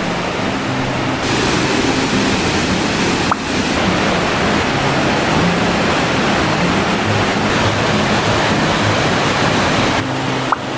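Steady rushing of a waterfall and a rocky mountain stream, water pouring over boulders.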